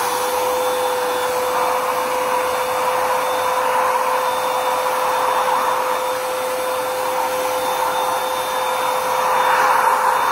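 Aldmfront cordless handheld ULV sprayer's electric fan motor running at full speed with a steady whine and rushing air from the nozzle. It is working as it should, and it gets a little louder near the end as the nozzle turns toward the microphone.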